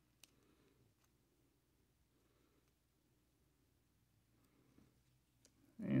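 Near silence with a few faint, sharp clicks of a small Allen wrench working a set screw on a metal wrist trigger release.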